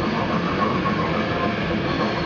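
Grindcore band playing live: a dense, unbroken wall of distorted electric guitar and fast drumming, with the singer growling into the microphone.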